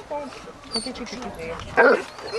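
A dog barks once, loudly, near the end.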